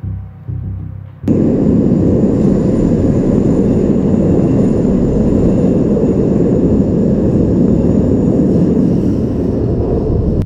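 A metro-tram train passing close by in a concrete tunnel: a loud, steady low rumble that starts abruptly about a second in and holds until it cuts off at the end.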